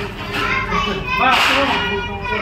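Several people talking at once in a close crowd, with a louder, higher-pitched voice rising above the others a little past the middle.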